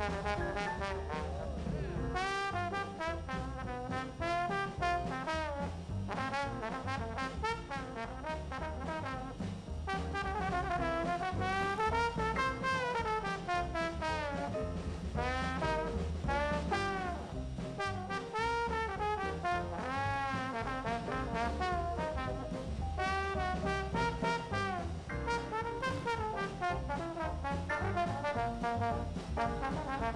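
Trombone solo in a New Orleans-style jazz band, the melody sliding and bending between notes over the band's bass and drums.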